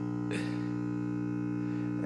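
Marantz 2238B stereo receiver making a loud buzzing through its speaker: a steady mains hum, a stack of even low tones that does not waver. The same buzz on both channels is indicative of a power-supply problem rather than an amplifier fault, which the repairer puts down to a faulty power supply section.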